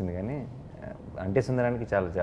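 A man's voice speaking, with rising and falling pitch; no other sound stands out.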